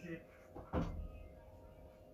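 A single short thump a little under a second in, over quiet room tone with a faint steady hum.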